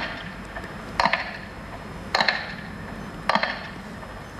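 Slow, even metronome ticks over loudspeakers, about one a second, each with a short ring: the metronome beat that marks a minute of silence.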